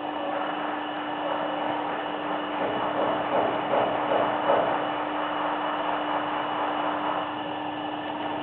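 Electric motor running steadily: a constant whirring noise with a steady hum.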